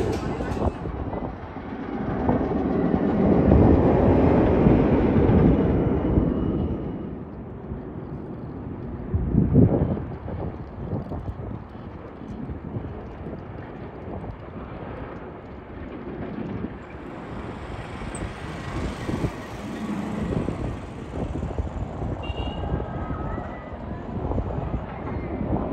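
Twisted Colossus roller coaster train, an RMC hybrid with steel track on a wooden structure, rumbling along the track. The rumble swells a couple of seconds in and fades around six seconds, with a short louder burst near ten seconds, then carries on more quietly.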